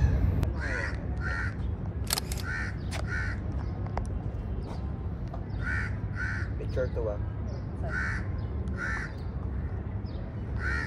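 A crow cawing in repeated pairs of short calls, a pair every two to three seconds, over a steady low background rumble. A few sharp clicks come in the first few seconds.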